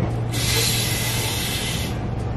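Air hissing out through the neck of a 9-inch latex balloon as it is let down from over-inflation to a rounder, less stiff size. It is one steady hiss of about a second and a half that starts and stops sharply.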